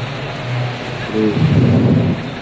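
Loud, rough background noise of a busy indoor hall picked up by a phone microphone, with a steady low hum, a brief spoken "okay" about a second in, and a louder low rumble in the last half second.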